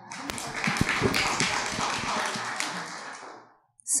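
Audience applauding, a dense patter of many hands that dies away about three and a half seconds in.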